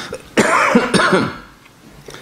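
A man coughs and clears his throat: a sudden harsh burst about half a second in, and a second one about a second in.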